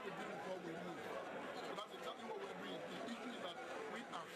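Speech: a man talking into reporters' microphones over the chatter of a crowd around him.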